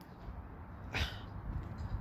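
Low, steady outdoor background noise in a pause between words, with one short hiss about a second in.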